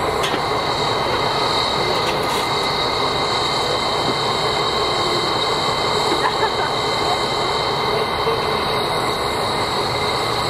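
C57 steam locomotive in steam, giving a steady hiss with a constant thin whine running under it, over the chatter of a crowd.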